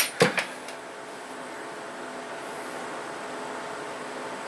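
A few short plastic knocks in the first second as a yellow road barricade lamp is handled, then a steady low hum from the running desktop computers' fans.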